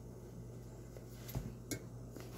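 Quiet room tone with a steady low hum, and two faint clicks a little after a second in.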